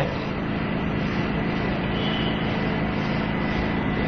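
Steady background hum and hiss with no speech, holding an even level throughout, with a faint high tone briefly in the middle.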